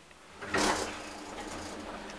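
Sliding doors of a 1994 KONE traction elevator car starting to move, a sudden rush of noise about half a second in that settles into a steady hum.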